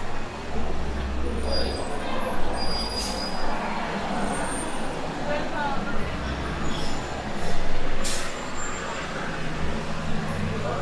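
City street ambience: traffic running past, with the low rumble of a heavy vehicle's engine coming and going, and the background chatter of passers-by. Two short sharp sounds cut through, about three and eight seconds in.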